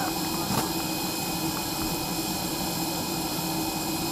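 Jet aircraft engine noise: a steady turbine whine over an even roar, with a single click about half a second in.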